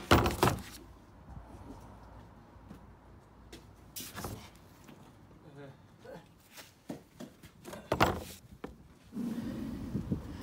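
Knocks and clatter of a Metabo angle grinder being handled in and lifted out of its plastic carry case: a sharp knock at the start, then others about four and about eight seconds in. The grinder is not running.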